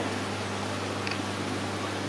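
Steady low electrical hum with an even hiss from running equipment, such as the pumps, filters and air conditioning of an aquarium shop.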